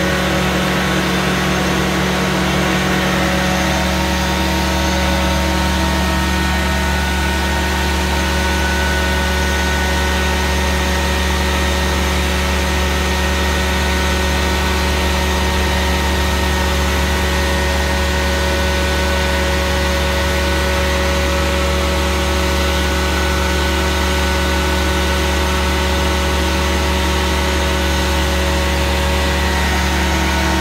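Prochem Performer 405 truck-mount carpet-cleaning machine running steadily: a constant engine drone with several steady tones above it.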